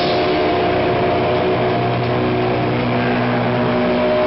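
Loud, distorted, amplified electric guitars holding a sustained chord with no drums playing. A lower note swells in partway through and fades shortly before the end.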